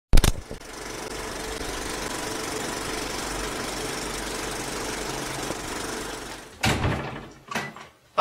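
A steady mechanical rattling noise that opens with a sharp click and fades out near the end, followed by two louder sudden knocks.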